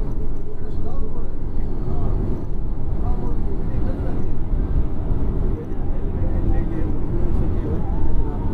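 Steady low rumble of a Yutong coach's engine and road noise heard from inside the cabin while the bus drives along, with indistinct voices faintly mixed in.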